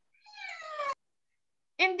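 A cat meowing once: a single high, slightly falling call lasting under a second that cuts off abruptly.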